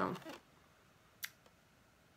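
Near silence, broken once about a second in by a single short, sharp click from the plastic casing of a small thermoelectric mini fridge being handled.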